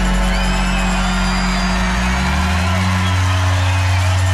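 Live rock band letting a held chord ring out at the end of a song, its low notes shifting about two seconds in, while the crowd cheers and whoops.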